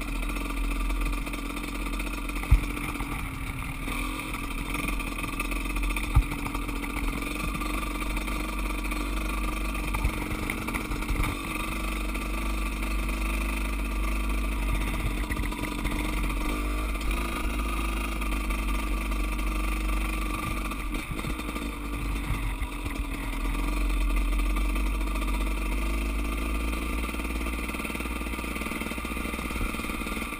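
KTM 200 two-stroke dirt bike engine running at a steady cruise, with wind buffeting the mount-mounted microphone. Two sharp knocks stand out a few seconds in.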